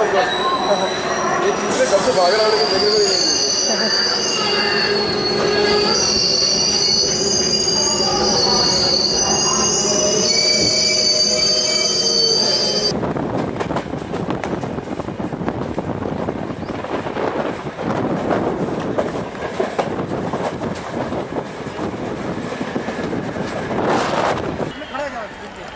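Local train's steel wheels squealing on the rails, several high steady tones held for about half the time. The squeal then gives way suddenly to the rushing clatter of the train running over the track.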